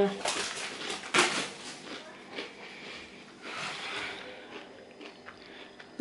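Crunchy quinoa potato crisps being bitten and chewed, with two sharp crunches in about the first second and a quarter, then softer chewing and handling noise.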